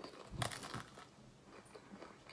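A crunchy bite into a flaky, cream-filled pastry cookie about half a second in, followed by faint chewing crackles.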